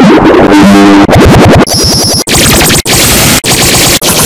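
Harsh, heavily distorted electronic audio effects, very loud, chopped into short pieces by sudden cut-offs about every half second. Pitched glides and a held tone come in the first second, and a high chirping tone comes near the middle.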